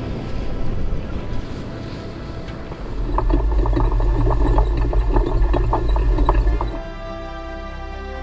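Water splashing and churning around the wheels of an off-road caravan being towed through a rocky river crossing, with a low rumble and many crackles; it grows louder about three seconds in. About seven seconds in it cuts to steady background music.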